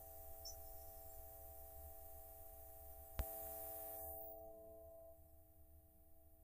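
Faint room tone with a steady electrical hum and hiss. A single sharp click comes a little past three seconds in, and soon after it the hiss drops away and the hum fades lower.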